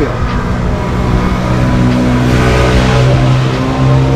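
A motor vehicle's engine running with a steady low hum, with road noise that swells and fades about two to three seconds in.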